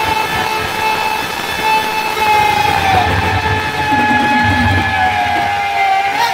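Live band music with one long held high note that dips slightly lower about halfway through, over steady drums.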